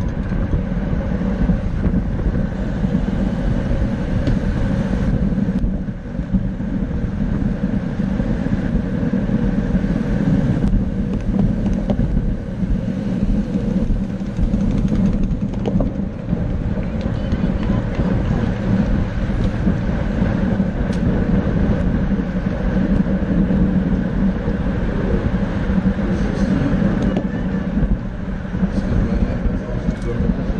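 Steady rush of wind buffeting a bicycle-mounted camera's microphone, mixed with tyre and road noise from a road bike riding fast in a racing pack.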